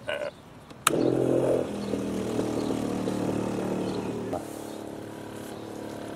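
A toggle switch clicks once about a second in, and a solar-powered water pump's small electric motor starts and runs with a steady hum; about four seconds in its tone shifts and it drops a little in level.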